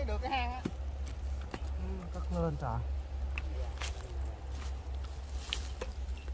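Short bits of a man's voice, then a scatter of light taps and scrapes from a small shovel working loose soil in a dug hole, over a steady low rumble.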